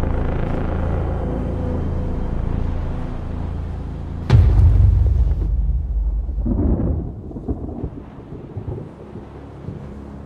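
Film soundtrack with a low droning bed. About four seconds in, a sudden loud crack of thunder breaks and its low rumble fades over the next couple of seconds.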